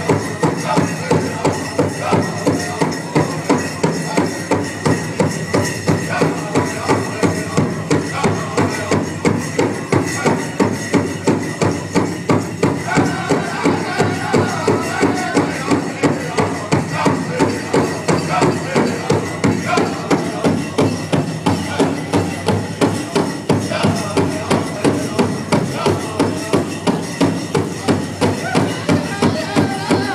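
Powwow drum and singers: a large drum struck by several drummers in a steady, even beat of about two strokes a second, under a group of singers singing together.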